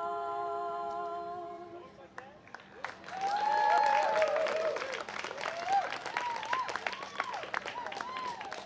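Two women's voices hold the final sung note of a song, which ends about two seconds in. After a short pause, the audience claps, cheers and whoops.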